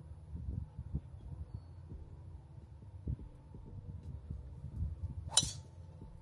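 A golf club hitting a teed-up ball on a tee shot: a single sharp, ringing strike about five seconds in, over a low steady rumble.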